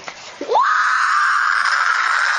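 A girl screaming: one long, high-pitched scream that rises sharply in pitch about half a second in and then holds steady.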